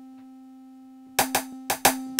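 Drum samples played from the Battery 4 drum sampler. A steady low tone rings on its own for about a second, then four short, sharp drum hits come in two quick pairs.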